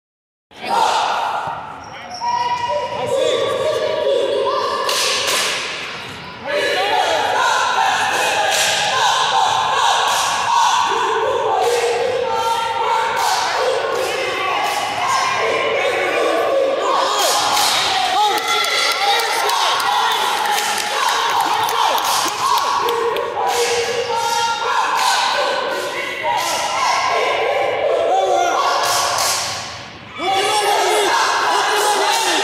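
Coaches and spectators shouting throughout a wrestling bout in a gymnasium, with occasional thuds of the wrestlers hitting the mat.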